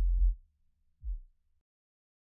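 Deep synthesizer bass notes of electronic background music: one held note that ends about half a second in, and a short lower note just after a second.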